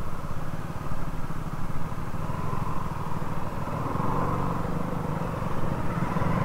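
Motorcycle engine running steadily at low speed, heard from the rider's seat.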